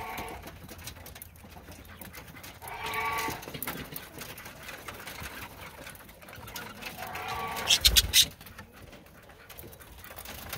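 Budgerigar flock feeding on fresh grass in a foil pan: scratchy rustling and pecking, with three drawn-out pitched calls, at the start, about three seconds in and about seven seconds in. Just before eight seconds comes a short flurry of sharp, loud crackles.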